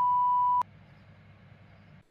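A single steady, high electronic bleep tone, a sound effect cutting off the end of a spoken phrase, that stops abruptly about half a second in. Only a faint low hum follows.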